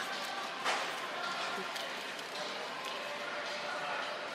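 Steady grocery-store background of indistinct voices and faint music, with a few light knocks of cans being picked up from a stacked display.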